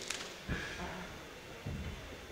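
Low background murmur of the venue around the cage, with a sharp click just after the start and two dull thumps, about half a second and a second and a half in.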